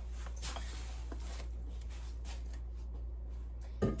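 Faint crinkles and light taps from handling a plastic-wrapped tray of empty aluminum bottles, over a steady low hum.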